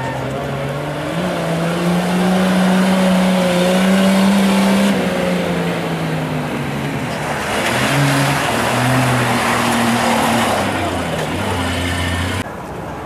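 A Nissan 4x4's engine revving hard as it drives a loose dirt course: its pitch climbs over the first five seconds, drops suddenly, then rises and falls again. A spell of hissing noise about eight seconds in, with the engine still running.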